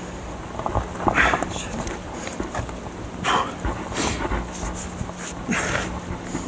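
A climber breathing hard from the exertion of downclimbing a rock face: a few short, sharp breaths at uneven intervals, over a low wind rumble on the microphone.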